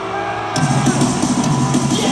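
Live rock band playing through an arena PA, heard from the crowd. About half a second in, the full band comes in loudly with drums and bass.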